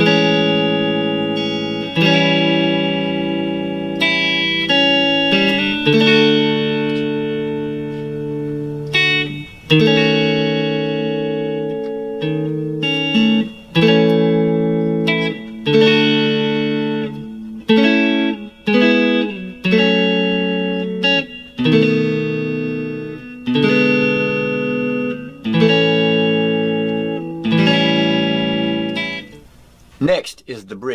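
Fender Stratocaster electric guitar playing a slow chord progression in A major, through A, Amaj7, A7, D, D#m7♭5, F#m, B7 and E. Each chord is struck about every two seconds and left to ring.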